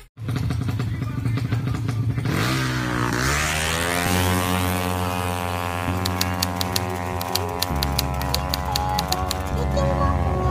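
Drag-racing motorcycle engine revving up, its pitch rising over a couple of seconds and then held high and steady. A run of even ticks, about four a second, comes in over the second half, likely a music beat.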